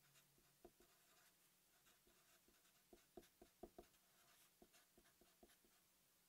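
Very faint felt-tip marker writing on paper: short, scattered scratches of the pen strokes, a little denser about halfway through.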